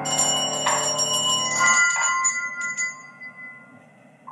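Coloured handbells shaken by hand, several strikes ringing out in high clear tones over a sustained piano chord. The chord fades out about two seconds in, and the bells ring on, dying away near the end.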